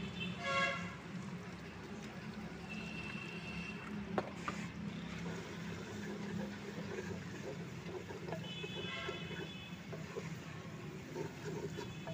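Steady low hum, with short vehicle-horn toots about half a second in and again around nine seconds, and a single sharp knock about four seconds in.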